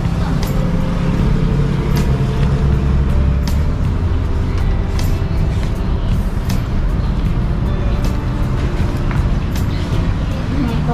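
Steady low rumble of road traffic and a running vehicle engine, heaviest in the first few seconds, with scattered sharp clicks and knocks.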